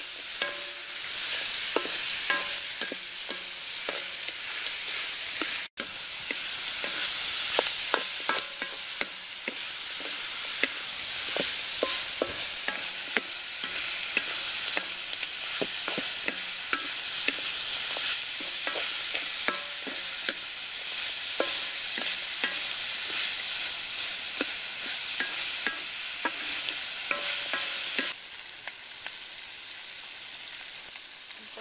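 Chopped chicken sizzling as it is stir-fried in a large metal wok, with a wooden spatula scraping and clicking against the pan many times. The sound cuts out for an instant about six seconds in and is a little quieter in the last two seconds.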